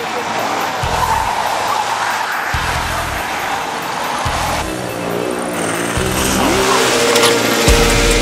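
Tyres of a Toyota Camry sedan squealing as it spins donuts on asphalt, mixed with music with a heavy, rhythmic bass beat.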